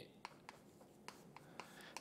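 Faint chalk on a chalkboard: a series of light taps and short strokes as words are written.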